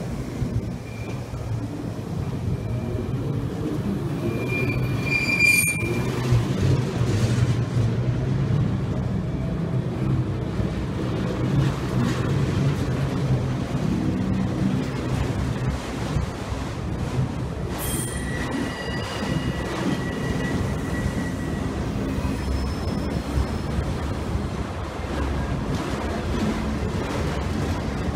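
Freight train of autorack cars rolling past close by, a steady rumble of wheels on rail. High wheel squeals come in briefly about five seconds in and again around eighteen to twenty seconds, each with a sharp click.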